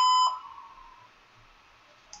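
A laptop's system beep: one steady, mid-pitched electronic tone that cuts off a moment in, given as a key is pressed at the BIOS screen.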